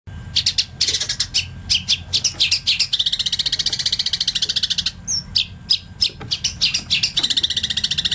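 Long-tailed shrike (cendet) singing: a quick series of sharp, high chattering notes, running into a fast rattling trill from about three seconds in for about two seconds, and again near the end.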